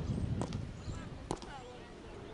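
Field hockey sticks striking the ball twice, two sharp knocks about a second apart, over low wind rumble on the microphone and faint distant voices.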